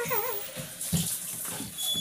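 Soft grass broom (jhaadu) swishing across a floor, with a few dull knocks.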